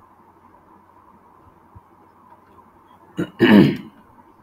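Quiet room tone, then about three seconds in a person clears their throat with a short cough lasting about half a second.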